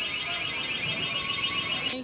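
An electronic alarm sounding a fast, high-pitched warbling beep over and over, cutting off suddenly at the end.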